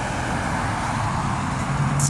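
Steady low rumbling background noise with a faint hum, of the kind a running vehicle makes.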